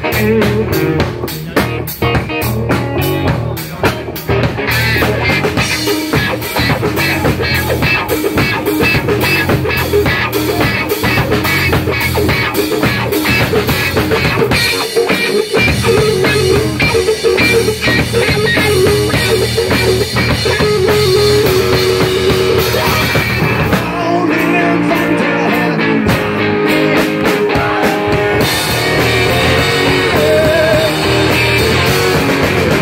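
Live rock band playing an instrumental passage: electric guitar over a drum kit. About 24 seconds in, the drums and low notes drop out for a few seconds, leaving the guitar, and the full band comes back in near the end.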